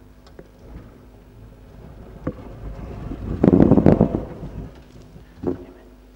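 Microphone handling noise: a few knocks and a loud muffled rumble on the microphone lasting about a second in the middle, as the microphone is taken over by the next speaker.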